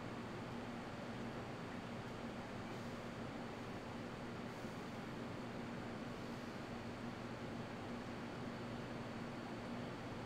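Steady air noise with a low hum, from room fans running.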